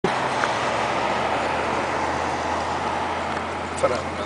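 Massed calling of a huge flock of birds, countless calls merging into one steady chatter, over a low steady hum.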